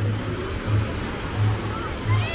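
Small waves washing in on a beach, a steady rushing hiss, with a low bass beat from music thumping about one and a half times a second and faint voices of people in the water.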